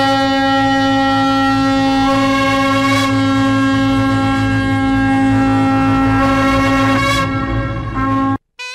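Wind instrument music: one long sustained note held over a steady drone, the upper line shifting pitch slightly a few times.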